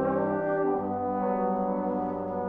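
Trombone choir playing sustained chords together, the harmony moving to a new chord about a second in.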